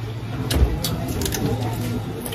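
A person eating tea leaf salad close to the microphone: a few sharp mouth clicks and a low thump over a steady low hum.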